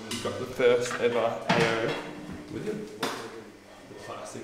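Indistinct voices talking, with a few sharp knocks and clinks of metal scooter parts being handled on shelves.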